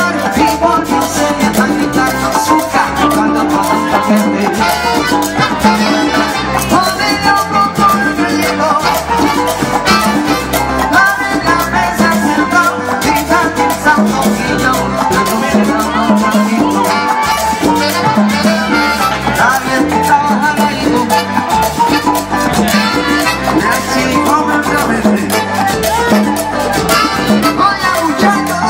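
A live salsa band playing loudly through a stage PA, with congas, drum kit and trumpet over a steady dance beat.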